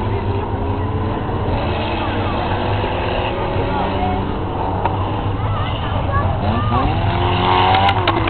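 Engines of cars racing on a dirt and grass endurance track, a steady drone, with one engine revving up, rising in pitch, about six seconds in.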